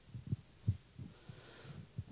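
A handheld microphone being handled: several soft, irregular low thumps, with a faint breath-like hiss about halfway through.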